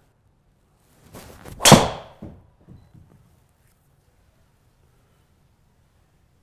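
Golf driver swung at about 118 mph club speed: a rising swish of the club, then one sharp, loud crack as the driver head strikes the ball, ringing briefly. A few fainter knocks follow.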